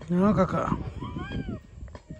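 A loud, drawn-out vocal call with a falling pitch, followed about a second in by two higher calls that rise and fall in pitch.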